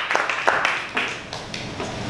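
Audience applauding, the clapping thinning out and dying away about halfway through.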